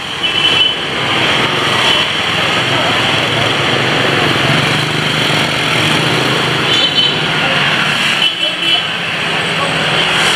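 Busy street traffic, mostly motorbikes and scooters running past, a steady loud noise with a low engine hum, with people's voices in the background.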